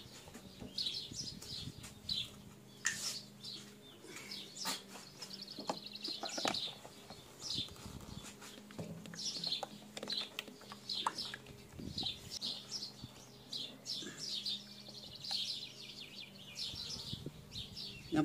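Small birds chirping in quick repeated calls, with a few faint knocks and a low steady hum underneath.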